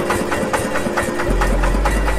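Small fishing boat's engine idling with an even knocking beat of about six strokes a second. A deep low rumble joins partway through.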